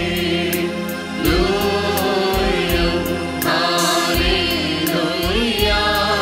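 Church choir of men's and women's voices singing a liturgical hymn, backed by an electronic keyboard with a steady beat.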